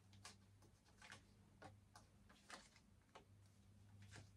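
Near silence with faint, irregular clicks of tarot cards being handled in the hands, over a low steady hum.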